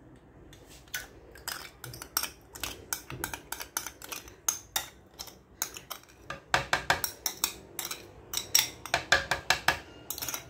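Metal spoon scraping thick mayonnaise out of a cup into a plastic blender jar: a run of quick clicks and clinks of the spoon against the rims, sparse at first and much busier in the second half.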